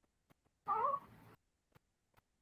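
A single short, pitched animal cry, cat-like and wavering, from a wildlife film clip played over a video call, dying into a quieter tail after about half a second.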